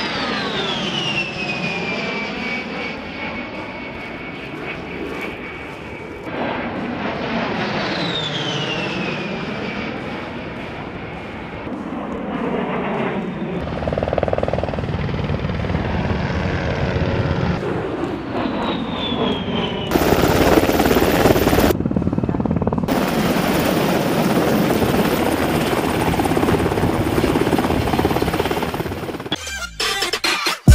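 Fairchild Republic A-10 Thunderbolt II's twin TF34 turbofans passing by twice, each pass a high whine that falls in pitch as the jet goes over. From about halfway, helicopter rotors take over with a deeper, rougher sound, and in the last third a loud, steady rushing noise.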